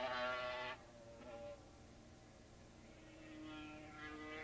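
Racing motorcycle engines held at high revs and heard from a distance: a steady, high-pitched drone that drops away about three-quarters of a second in. A quieter, lower engine note grows again near the end.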